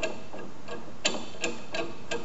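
Brake-line flaring tool's press screw being wound down by hand: a string of light metal clicks, about three a second.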